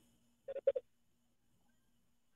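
A brief soft chuckle of three short pulses about half a second in, then only a faint low hum.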